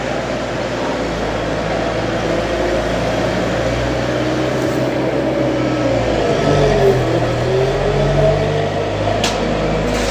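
Diesel engine of an Ammann tandem road roller running steadily, its pitch dipping and then rising again about seven seconds in.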